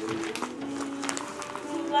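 Gift wrap and tissue paper crinkling and rustling in short crisp bursts as a present is unwrapped, over background music with held notes.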